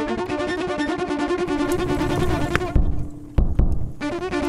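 Bowed electric cello with live electronic sound: sustained notes over a fast, even pulse of ticks. About three seconds in the pulse and high part drop away, two deep low thuds sound, and the full texture returns near the end.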